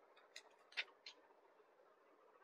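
Near silence broken by three faint short clicks in the first half, from a paper number card and a folded jute saree being handled on a counter.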